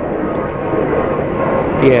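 An aeroplane passing over, giving a steady, even rush of engine noise.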